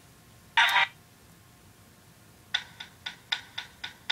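A short blip of sound just under a second in, then, from about halfway, a quick run of sharp clicks, about four a second: the key-click sounds of a touchscreen device's on-screen keyboard as keys are tapped.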